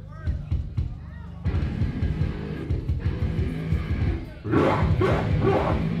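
Live rock band of electric guitars, bass and drums starting a song. The full band comes in about a second and a half in, then gets louder with yelled vocals about four and a half seconds in.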